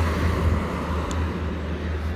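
Low, steady outdoor background rumble.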